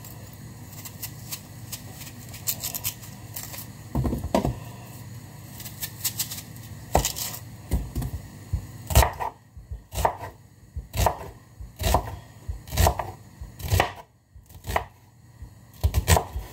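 Kitchen knife slicing white onions on a wooden cutting board. The blade knocks on the board about once a second from about nine seconds in, after lighter clicks and scrapes of peeling and trimming.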